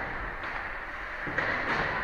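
Ice hockey rink ambience during play: a steady wash of skate blades on the ice and arena noise, with a couple of faint knocks.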